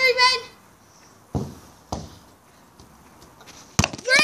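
Two dull thumps of a football about half a second apart, a bit over a second in, during a heading attempt, then a sharp knock near the end.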